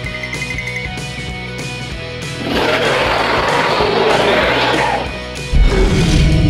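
Background music with a steady beat. About two and a half seconds in, a loud dinosaur roar sound effect lasting about two and a half seconds is laid over it, followed near the end by a sudden low thump.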